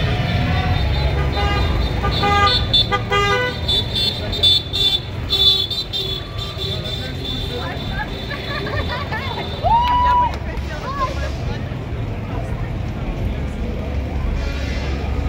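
Busy street ambience: people talking and the low rumble of vehicles, with a short clear tone that rises and holds for about half a second about ten seconds in.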